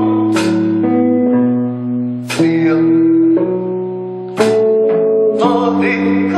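Guitar chords strummed and left to ring, a new chord struck four times, every one to two seconds.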